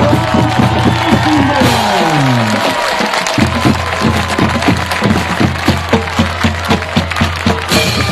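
Marching band playing: pitched band music with a low line that steps downward over the first few seconds. From about three seconds in, it settles into a held low note with a regular beat of strikes about three a second.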